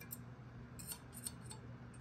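Faint, light metallic ticks and scrapes from a steel feeler gauge blade being worked against the edge of a straightedge laid on an aluminium cylinder head, a few scattered clicks. The 0.004 in blade will not go in under the edge, a sign that the head face is flat.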